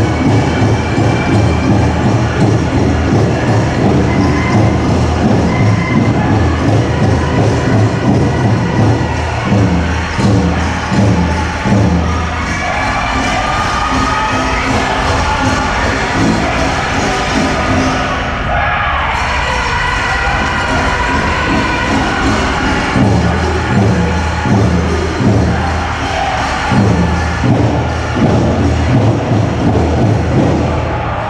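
A powwow drum group singing a grass dance song in high voices over a steady, fast beat on a large shared drum. The drumbeat drops back for about ten seconds in the middle while the singing carries on, then comes back in.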